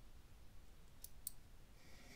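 A computer mouse button clicking twice, two short faint clicks about a quarter second apart, against near silence.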